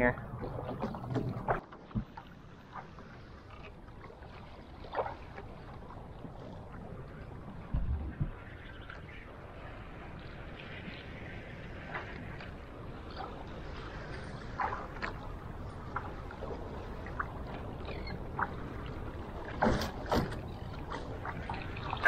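Steady wind and light chop lapping against a small skiff's hull, with a few short knocks scattered through.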